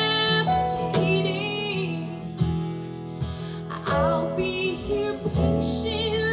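A woman singing a slow pop ballad live with a band, over guitar accompaniment and steady low bass notes.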